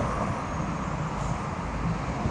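Street traffic noise from a car driving away, its engine and tyre noise fading slightly, with uneven low rumble from wind on the microphone.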